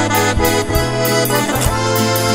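Piano accordion playing a waltz: a sustained reedy melody over regularly repeating bass notes and chords.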